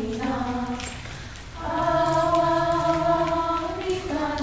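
A group of young voices chanting in unison, breaking off about a second in, then holding one long note together until near the end.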